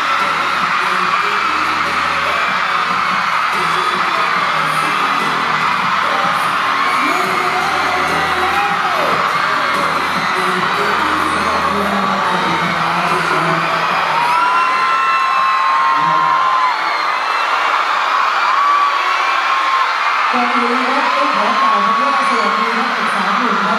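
A crowd of fans screaming and cheering in high-pitched shrieks over pop music with a bass beat. The beat drops out about halfway through, leaving the screaming.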